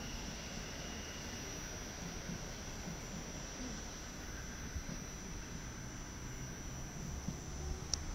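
Faint, steady rumble of a Mat '64 Plan V electric train pulling away into the distance.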